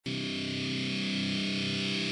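Distorted electric guitar holding one chord that rings steadily, starting abruptly: the opening of a death/thrash metal song.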